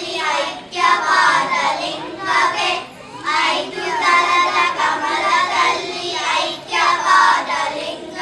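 A group of children singing a song together into a microphone, in phrases separated by short breaks.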